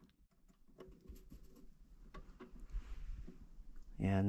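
Faint, scattered light clicks and handling rustle from a multimeter and its test leads being moved against breaker terminals, over quiet room tone with a low rumble near the end.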